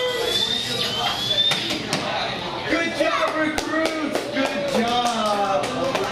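Electronic sound effects from Playmation Avengers repulsor gear toys: two rising tones in the first second and a half, then a quick run of sharp clicks under voices.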